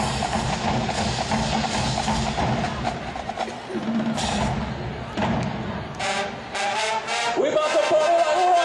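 Marching band drumline playing a steady beat on bass and snare-type drums, with sharper, more spaced hits in the last couple of seconds and a rising pitched note near the end leading into the band.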